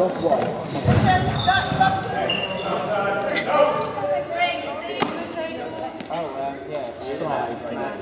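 Trainers squeaking and feet thudding on a sports-hall floor as players run and cut, with indistinct voices echoing around the hall. A sharp knock sounds about five seconds in.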